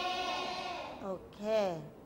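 A class of children reading aloud together in unison, the last word drawn out and fading about a second in; then a single voice speaks briefly with a sweeping rise and fall in pitch.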